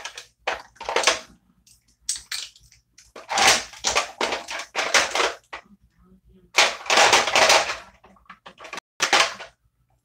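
Plastic lip gloss tubes clattering and rattling as a hand rummages through a drawer of lip products: a few short clicks, then longer bursts of rattling about three seconds in and again near seven seconds.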